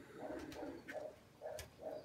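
Domestic pigeons cooing softly: about five short, low calls in a row, with a few faint sharp clicks among them.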